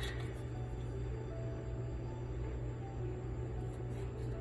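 Soft background music with a few faint held notes, over a steady low hum.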